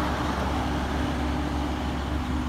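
Kenworth W900B dump truck's diesel engine pulling away down the road: a steady low drone that slowly fades.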